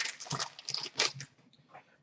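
Foil trading-card pack wrapper crinkling and cards shuffling in the hands: a few short crackles in the first second, then quiet.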